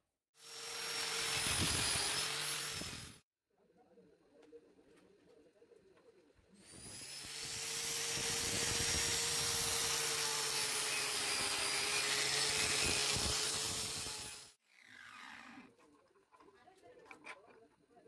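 Angle grinder running against a steel center punch clamped in a vise, with a steady whine over the noise of the wheel on metal. It runs twice: a short pass of about three seconds, then after a pause a longer run of about eight seconds.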